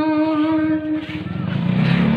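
A singing voice holds one long, steady note that ends about a second in. Then a low vehicle engine rumble rises and grows louder toward the end.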